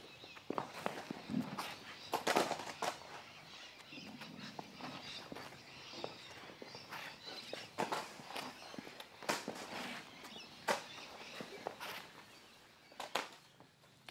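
Bean bags thrown overarm landing on a concrete floor: a dozen or so short slaps and thuds, spread irregularly.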